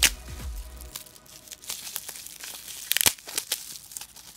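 Plastic bubble wrap crinkling and crackling as hands unwrap a product. There is a sharp crackle at the start and a burst of crackles about three seconds in.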